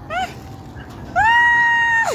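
Toddler's high-pitched squeal of excitement, held steady for about a second and then falling sharply in pitch, after a short laugh near the start.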